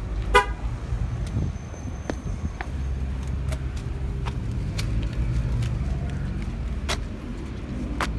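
A short car horn toot about a third of a second in, over the low, steady rumble of a running vehicle engine, with footsteps clicking on asphalt.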